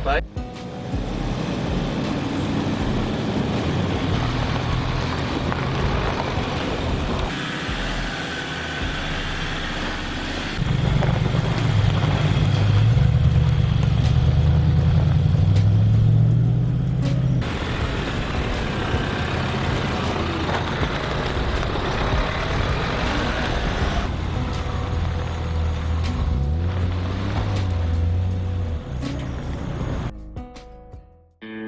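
4WD vehicles driving on a dirt and gravel track, engines running with tyre and gravel noise, in several separate passes. The loudest pass is in the middle, where the engine note climbs as the vehicle accelerates.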